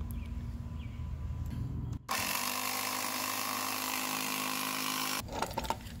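Small 12 V piston air compressor built into a Stanley jump starter, running steadily as it pumps up a bicycle tyre. It starts abruptly about two seconds in and cuts off about a second before the end. Its worn piston ring has been patched with hot glue.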